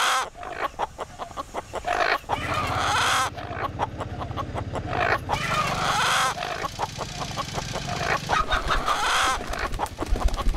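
Rooster clucks and crows cut into a rhythmic pattern in a film trailer's soundtrack. A low steady drone enters about two seconds in, and deeper bass pulses join near the end.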